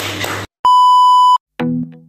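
Voices cut off, then a single steady high beep lasting under a second: the test-tone beep of a colour-bars transition. Music with a repeated chord about twice a second starts near the end.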